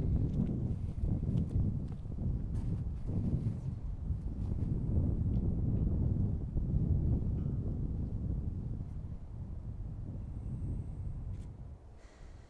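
Wind buffeting the microphone: a low, gusting rumble that swells and eases, dropping away near the end.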